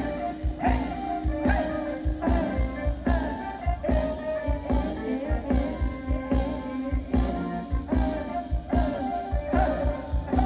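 Live band playing Thai ramwong dance music with a steady beat and a wandering melody line.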